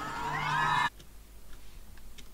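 A raised voice from the music video's soundtrack, its pitch rising, cut off abruptly about a second in. Then low room tone with a few faint clicks.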